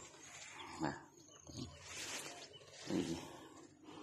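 Three short, low vocal sounds, each falling in pitch, about a second apart.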